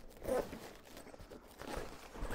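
A nylon instrument gig bag being handled and lifted from a wooden crate: fabric rustling and a zipper being worked, with a short, louder rustle about a quarter second in and more rustling building near the end.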